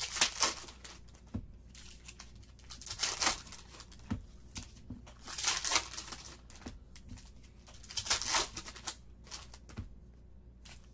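Plastic trading card pack wrappers being torn open and crinkled by hand, in four separate bursts of crinkling.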